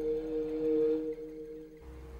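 Ambient electronic background music: two steady, pure held tones sounding together, fading toward the end.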